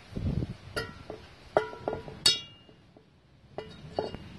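Steel parts clinking as the old key is worked out of the keyway in a steel leaf-blower impeller's hub. There is a short scrape, then four or five sharp metal clinks, each ringing briefly. The loudest and longest-ringing clink comes a little past the middle.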